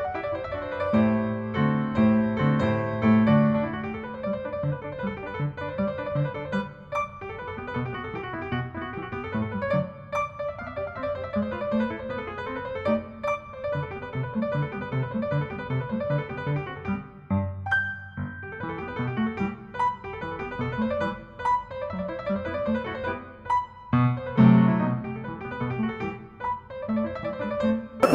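Background piano music: a keyboard playing a sequence of sustained notes and chords.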